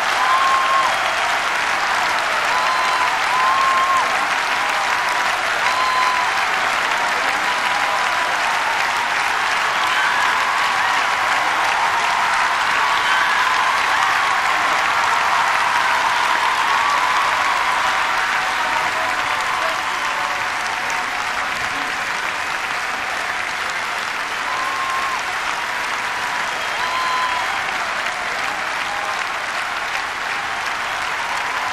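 A large concert audience applauding steadily and densely, with scattered short calls rising above the clapping. The applause eases slightly in the last third.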